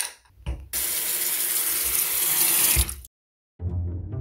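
Bathroom sink tap running: a few light knocks, then water pouring steadily into the basin for about two seconds before it cuts off abruptly. Music starts near the end.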